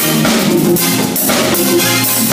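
A live band playing an instrumental groove: hand drums and drums keep a steady beat over keyboard and low sustained bass notes.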